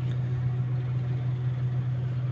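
An engine idling steadily: an even, low hum that does not change.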